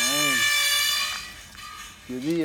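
A loud, steady buzzing tone, horn- or alarm-like, that cuts off suddenly a little over a second in, with a short rise-and-fall vocal sound over its start.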